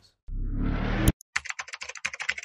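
Logo sound effect: a swelling whoosh that rises for under a second and cuts off with a click, then a quick run of keyboard-typing clicks, about ten a second, as the tagline types out on screen.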